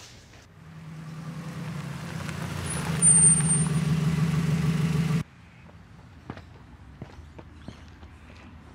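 A road vehicle's engine running, growing steadily louder, with a brief high squeal like a brake about three seconds in. It cuts off abruptly, leaving quiet outdoor ambience with a few faint ticks.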